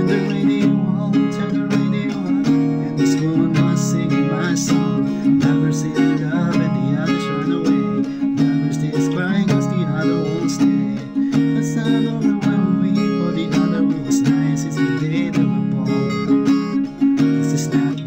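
Acoustic guitar with a capo, strummed steadily in a down, up-up-down, up-up-down, down-up pattern, changing between Am7 and G chords.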